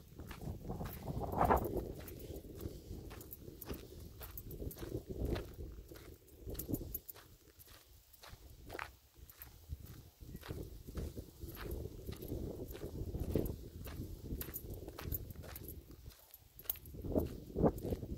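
Footsteps of a person walking along a trail, just under two steps a second, over a steady low rumble.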